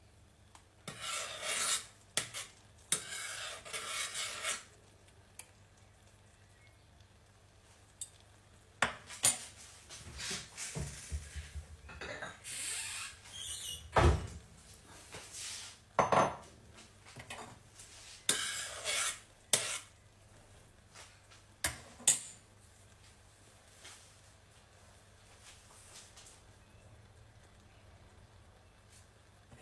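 Metal spoon stirring and scraping in a stainless steel saucepan of simmering strawberry compote, in scattered bursts with clinks of metal on metal and a sharp knock about halfway through.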